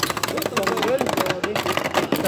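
Two Beyblade Burst spinning tops clashing in a plastic stadium: rapid, irregular clicks and clacks as they strike each other and the stadium floor.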